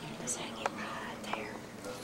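Soft whispering, with two light clicks, about half a second apart, near the middle.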